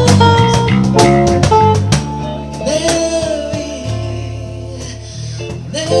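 Karaoke: a man singing into a microphone over a loud backing track with guitar, holding a long wavering note through the middle before the music swells again near the end.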